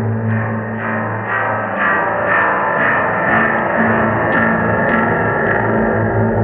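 Experimental electronic drone music: layered sine-wave tones through distortion and reverb, ringing like a gong. A low hum fades about two seconds in and returns near the end, under soft pulses about twice a second.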